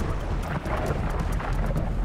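Water splashing and churning as a great white shark thrashes at the surface, with a heavy low rumble and fine crackling of spray.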